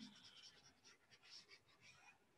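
Near silence, with faint, irregular scratching of a stylus on a tablet as handwritten digital notes are erased.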